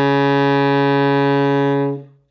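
Alto saxophone holding one long, steady low note at the end of a low-register exercise, fading out near the end.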